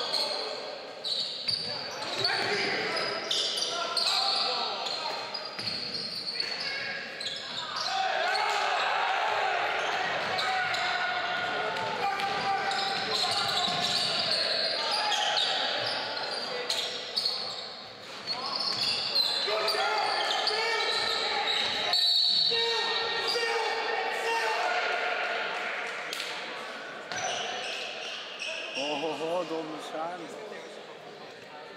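Basketball bouncing on a wooden gym floor during play, with players shouting to each other and the sound ringing around a large sports hall.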